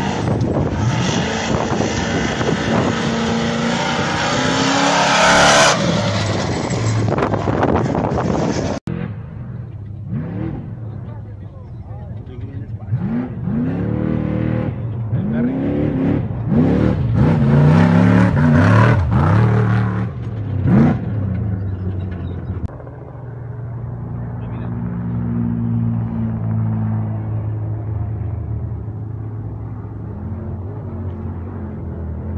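Trophy-truck race engines. First a truck running in the pits, loud for a moment about five seconds in; after an abrupt change, a truck on a desert course revs up and down again and again as it races over the rough ground, then sounds more distant and steady.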